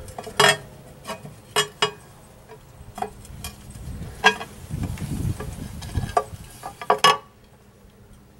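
Aluminium intake manifold cover plate being worked loose and lifted off a 2000 Acura TL 3.2's V6: a string of sharp metallic clicks and clinks as the plate shifts against the manifold, with a dull rumbling of handling in the middle and a last pair of clinks about seven seconds in.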